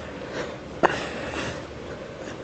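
A short, sharp breath drawn in by a person doing crunches, about a second in, over faint outdoor background.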